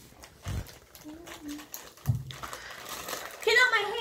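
Plastic snack packet crinkling as it is handled and worked at to tear it open, with two dull thumps. A voice rises near the end.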